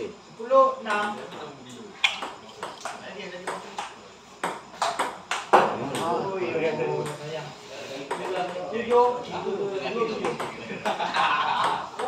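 Celluloid-type table tennis ball clicking sharply off paddles and the table, irregular knocks coming thickest in the first half, with voices talking.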